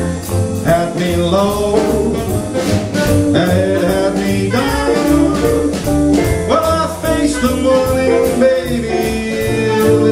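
Small jazz combo of piano, double bass, drums and saxophone playing an instrumental break of a swing tune, with the cymbals keeping a steady beat at about three strokes a second.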